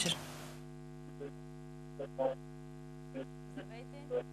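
Steady electrical mains hum on an open telephone line while the studio waits for a caller to speak, with a few faint, brief sounds scattered through it.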